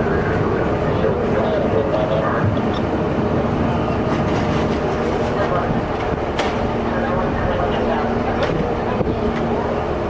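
Steady engine hum of fire apparatus running at the scene, with indistinct voices of a crowd and firefighters over it and a sharp click about six seconds in.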